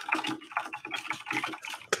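Fast typing on a computer keyboard: a quick, uneven run of key clicks.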